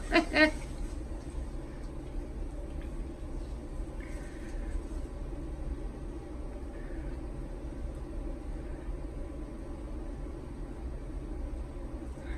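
A woman's short laugh, then a steady low background hum with a few faint puffs of air blown through a straw onto wet acrylic paint.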